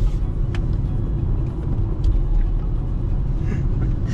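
Steady low road and engine rumble inside a moving car's cabin, with a couple of faint clicks.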